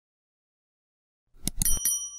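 Silence, then an animated subscribe-button sound effect about one and a half seconds in: a quick run of clicks followed by a short bell ding that rings on briefly.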